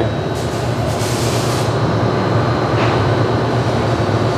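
Steady machine running with a low hum and hiss, with a brighter burst of high hiss about half a second in that lasts about a second.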